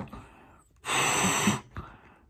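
A balloon being blown up by mouth. After a quieter pause for breath, one long hard blow goes into it about a second in, lasting under a second.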